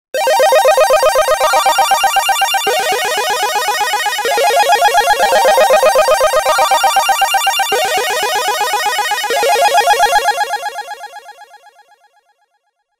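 A pitched audio sample played back through a Tone.js chorus demo with the chorus effect switched off, so the sound is heard dry. It moves through several notes with a rapid grainy pulsing and fades away over the last couple of seconds.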